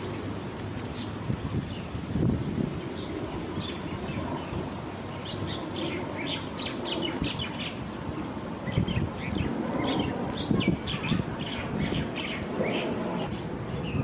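Small birds chirping: many short, quick high chirps from several birds, growing busier about five seconds in. Under them runs a steady low background rumble that swells now and then.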